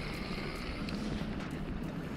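Wind buffeting the camera microphone: a steady low rumble under an even hiss.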